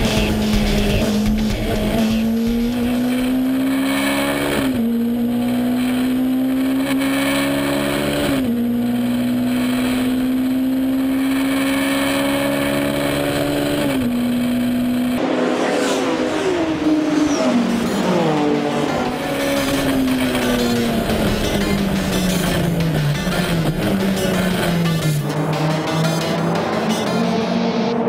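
Race-tuned 2-litre 16-valve four-cylinder engine of a VW Golf 3 race car heard from inside the cabin under full acceleration: the engine note climbs steadily and drops sharply at each of three upshifts. In the second half the engine note falls in a series of steps.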